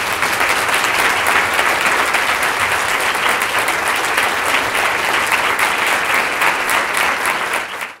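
Lecture-hall audience applauding steadily, a dense sustained clapping at the end of a talk, cut off abruptly at the very end.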